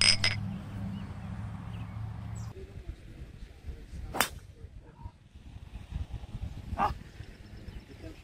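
Aluminium beer cans clinking together in a toast, a short ringing clink. About four seconds in, a golf driver strikes the ball off the tee with a single sharp crack, and a second shorter knock follows near the end.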